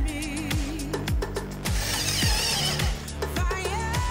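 Background music with a steady beat. Under it, for about a second near the middle, a cordless drill briefly drives a screw into an aluminium channel.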